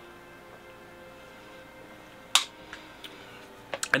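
Quiet background music with faint held notes. A little over two seconds in there is one sharp smack, and a few faint clicks follow near the end.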